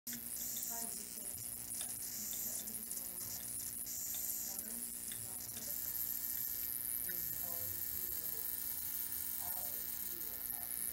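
Steady electrical buzz and high-pitched hiss from the high-voltage supply driving a plasma discharge in a homemade test-tube cathode ray tube, with a low hum underneath. A higher steady whine joins about halfway through.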